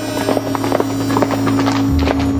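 Horses' hooves clip-clopping on a gravel road, a run of uneven knocks, over music holding a long low note.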